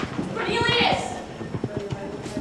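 A person's short high cry, about half a second in, over a run of quick, irregular knocks and clatter like hurried footsteps.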